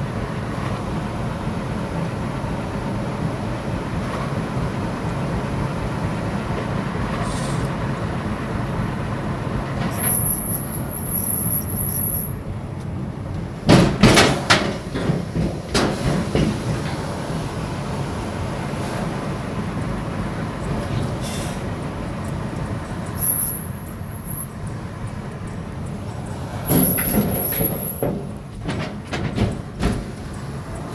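Steady road and engine noise inside a car's cabin as it drives over the floating bridge deck, with loud clunks and rattles about halfway through and again near the end. A faint high whine comes and goes a few times.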